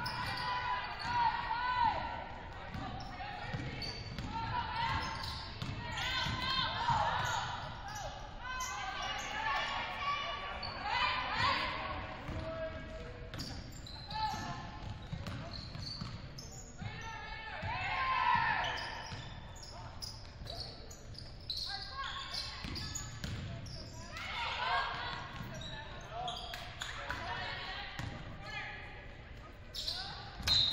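Basketball dribbling on a hardwood gym floor during play, with players' voices calling out, echoing in a large gymnasium.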